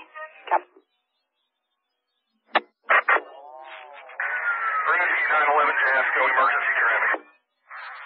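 Two-way emergency-services radio: a brief clipped fragment of a transmission, a gap of silence, then two sharp clicks as a radio keys up. A loud, garbled transmission follows, warbling with sweeping tones and too distorted for any words to come through.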